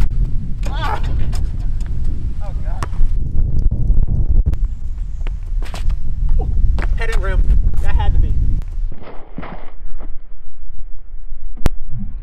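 Wind rumbling on the microphone, with a basketball bouncing a few times on asphalt and a sharp knock near the end. The wind drops off about three quarters of the way through.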